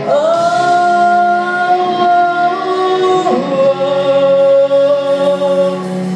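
Live band music with sung vocals over guitars. A voice slides up into a long held note, then drops to a lower held note about three seconds in.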